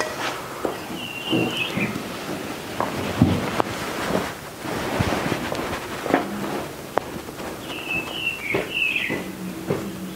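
Outdoor ambience: a steady hiss with irregular clicks and knocks, and two short runs of high chirping notes, about a second in and near the end.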